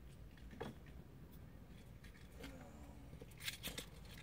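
Faint clicks and rattles of things being handled, loudest in a quick cluster about three and a half seconds in, over a quiet background. A faint voice is heard briefly in the middle.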